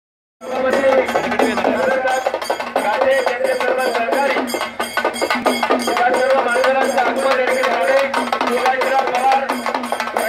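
Traditional drums beaten in a fast, steady rhythm of about four strokes a second, with a held, wavering melody over them. The music starts suddenly about half a second in.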